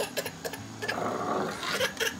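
Plastic child's chair knocking several times on a concrete patio, with a rough, scraping noise about a second in.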